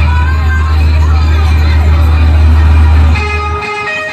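Live rock band in a club: a loud sustained low bass drone with wavering voices from the crowd above it. The drone cuts off about three and a half seconds in as held electric guitar notes ring out.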